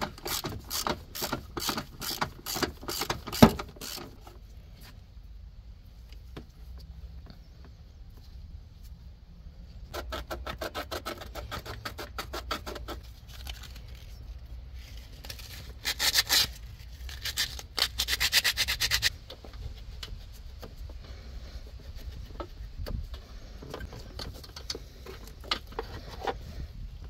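Hand sanding and scraping of a corroded ground-cable connection, cleaning a bad ground. It comes in runs of quick back-and-forth strokes, with the loudest run a little past halfway.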